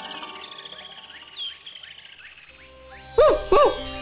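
Cartoon background music fading out under quick high chirps. Then, near the end, a cartoon dog gives two short, loud cries that rise and fall in pitch.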